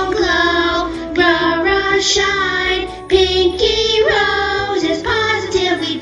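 A children's-style pop song: a high singing voice carries a melody over backing music with a steady bass line.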